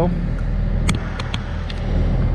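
Compact excavator engine running steadily with a low hum, heard from the operator's seat, with a few light clicks about a second in.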